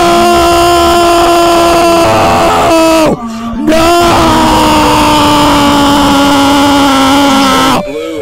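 Loud, drawn-out moaning voice mixed over music, a gag audio clip. It is held in long notes of about three seconds each, broken by short pauses about three seconds in and near the end.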